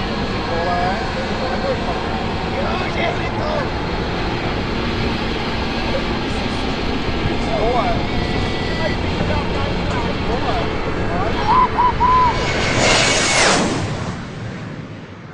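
Fighter jet running low and close over a runway: a steady jet rumble that builds to a loud, harsh sweep about twelve and a half seconds in as the aircraft passes overhead, with a falling tone as it goes by, then fades.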